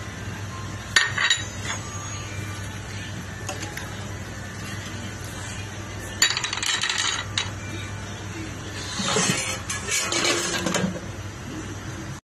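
Clinks and clatter of a stainless steel cooking pot and its glass lid: a sharp ringing clink about a second in, a longer rattle about six seconds in as the lid is set on the pot, and more clatter near the end, over a steady low hum.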